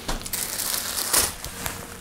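Plastic bread bag crinkling as a loaf is carried and handled, in uneven crackly bursts that are loudest a little past halfway.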